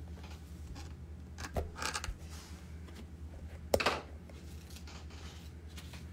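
Small handling noises from a quartz cabochon being lifted out of a plastic gem display box: soft rustles and light clicks, with one sharp click a little under four seconds in.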